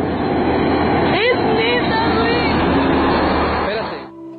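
A person's short, wordless vocal sounds over steady rumbling background noise. The sound cuts off just before the end.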